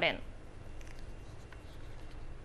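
A woman's voice cuts off at the very start, then low, steady room ambience with faint rustling.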